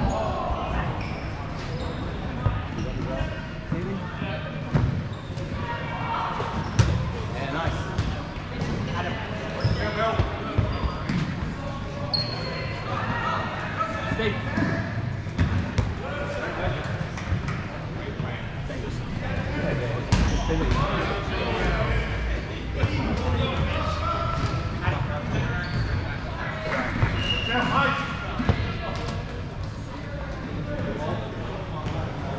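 Dodgeballs being thrown and bouncing, with irregular sharp thuds and smacks throughout, mixed with players shouting across a large echoing hall.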